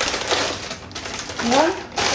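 A plastic bag of frozen dragon fruit crinkling and rustling as it is grabbed and handled.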